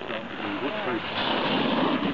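A snowboard's edge scraping across packed snow, growing louder in the second half as the rider slides up close. A person's voice is heard briefly before it.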